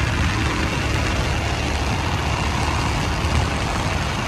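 Motorcycle riding at road speed, heard through a camera microphone with no wind protection: steady wind rush buffeting the mic, with the engine and road noise underneath.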